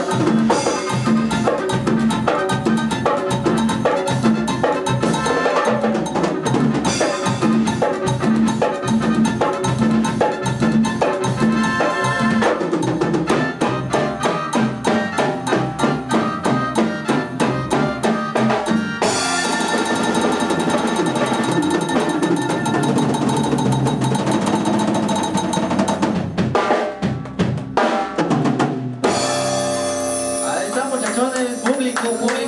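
Live band playing an instrumental passage: drum kit with a quick, steady beat, electric bass and keyboards. The drumming is sharpest in the first two-thirds; after that the sound turns more sustained, and it breaks up and trails off shortly before the end.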